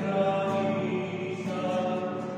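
Sung hymn, voices holding long notes in a slow melody: the offertory hymn during the preparation of the gifts at Mass.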